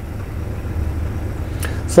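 Low, steady engine rumble of the Mercedes Sprinter 4x4 van, heard inside its cab.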